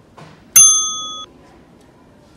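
A single bright bell ding, struck about half a second in, ringing for well under a second and then cut off abruptly.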